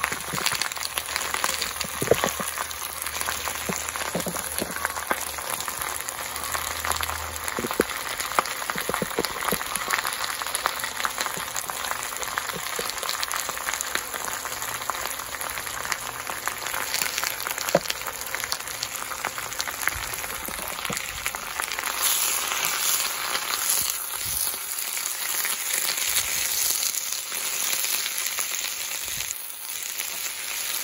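Fresh spinach leaves sizzling and crackling in a hot pan on an induction cooktop as they wilt down, growing a little louder in the last several seconds.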